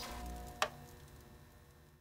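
The fading tail of an electronic outro jingle, with one sharp click a little over half a second in.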